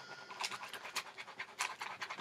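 The last chord of the music rings out and fades, followed by a string of irregular scratchy clicks and knocks of handling noise.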